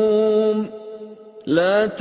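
Quranic recitation chanted by a single voice. A long held note breaks off about two-thirds of a second in, followed by a short pause, and the voice comes back near the end with a rising phrase.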